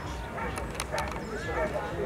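Indistinct voices talking in the background, with a few short clicks in the first second.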